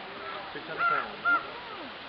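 A crow cawing twice, two short calls about half a second apart.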